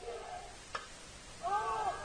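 A single sharp crack of a bat hitting the pitched ball, followed about three quarters of a second later by spectators shouting.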